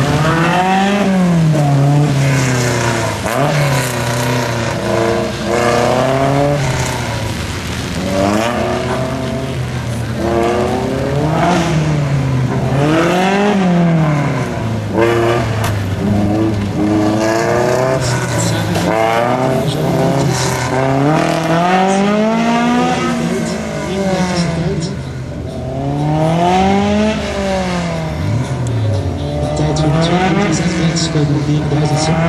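Open-cockpit racing car's engine revving hard on a slalom run, its pitch climbing and dropping again and again every few seconds as it accelerates and brakes between the cones.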